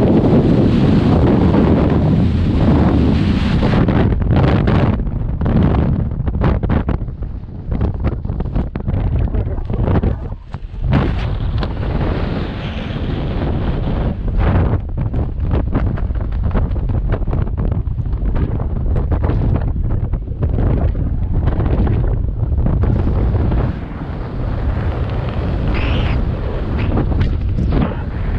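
Loud wind rushing over a skydiver's camera microphone during the jump, buffeting unevenly with a few brief dips.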